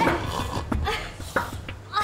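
Short, yelping human cries and gasps of effort from a scuffle, broken by a few sharp knocks.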